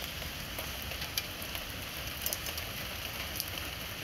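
Steady hiss-like background noise with a few faint, short clicks scattered through it.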